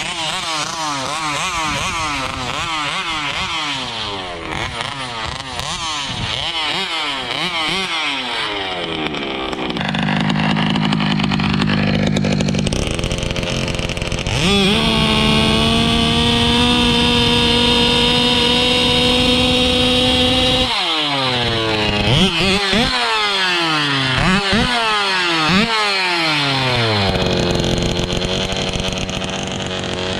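Large-scale RC dragster's gas two-stroke engine with a tuned pipe, revved in quick throttle blips, then idling briefly. About halfway through it is held at a steady high rev for about six seconds, drops, is blipped several more times, and revs up again at the very end.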